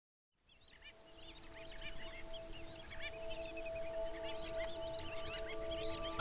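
Silence, then from about half a second in a soundtrack fades in and grows louder: many bird calls chirping over a held music chord.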